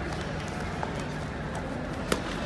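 Faint thuds of bare feet and blows during a full-contact karate bout on a foam mat, a few soft knocks over the steady hum and murmur of a large sports hall.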